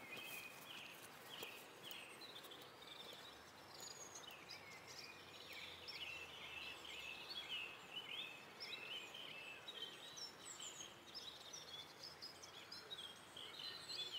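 Faint birdsong from several birds: a steady stream of short, quick chirps and twittering notes that overlap throughout, over quiet outdoor background noise.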